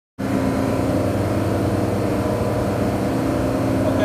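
Steady drone of running machinery: a constant low hum with a few steady tones above it, unchanging in level.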